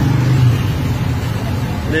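Steady low motor rumble under general noise, like a vehicle engine running close by, easing slightly after about half a second.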